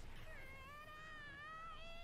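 A faint, drawn-out, high-pitched wavering cry lasting about a second and a half, coming from the anime episode playing in the background.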